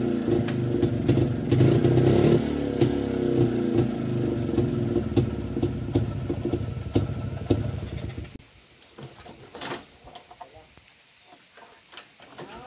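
Two-stroke motorcycle engines idling, an uneven popping running through them. The engine sound stops about eight seconds in, leaving only a few faint knocks.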